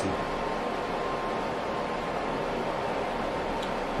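Steady fan noise: an even hiss with a faint thin whine running under it.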